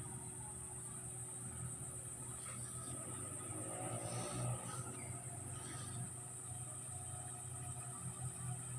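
A small motorboat's engine droning steadily out on the lake, a low hum, with a continuous high-pitched buzz of insects.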